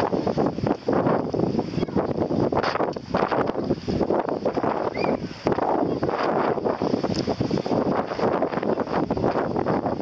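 Wind buffeting the camera's microphone: a loud, gusty rumble that swells and dips every fraction of a second.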